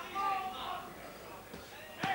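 A short stretch of a man's voice near the start, then the low murmur of a crowd in a large hall.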